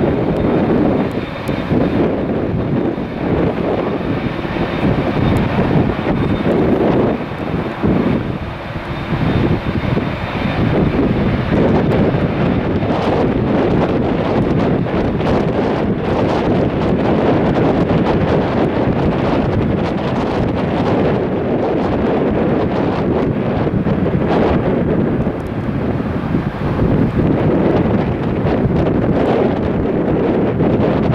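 Jet airliner engines running as a Boeing 787 taxis and lines up on the runway, heard through gusty wind noise on the microphone.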